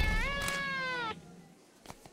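One long cat-like meow that rises briefly, then slowly falls in pitch for about a second before cutting off abruptly.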